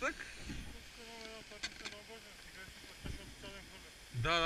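Faint, distant-sounding voice over quiet outdoor background noise, with a few light knocks.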